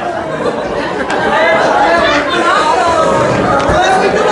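Voices talking over one another in a large hall; speech is the only sound that stands out.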